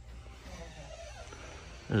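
Low, steady background hum of a store aisle, with a man starting to speak right at the end.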